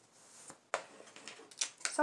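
A few light clicks and rustles from a small makeup highlighter compact being handled, with the sharpest click about three quarters of a second in.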